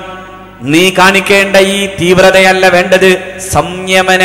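A man's voice at a microphone in a sing-song, chant-like delivery with long held notes. There is a brief lull at the start, then the voice comes back in with a rising pitch.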